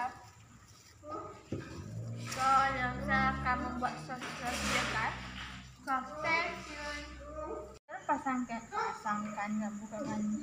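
Indistinct voices talking, with music playing in the background; the sound cuts out briefly near the end.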